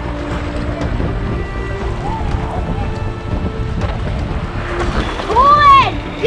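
Rushing river water from an inflatable kayak running a riffle, with wind on the microphone, under background music with long held notes. Near the end a loud voice rises and falls in pitch.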